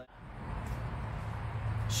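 Steady background noise with a low hum, fading in after a cut, with no distinct event in it.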